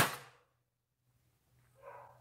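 A single loud, sharp bang at the very start, ringing off within a fraction of a second, followed by silence; a short, faint sound comes in near the end.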